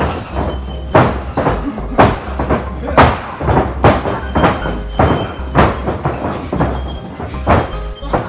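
Music with a heavy, slow beat, its strong hits landing about once a second over a steady bass.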